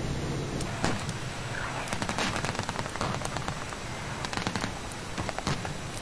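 A series of sharp cracks in quick, irregular bursts, starting about a second in, after a low steady rumble fades away.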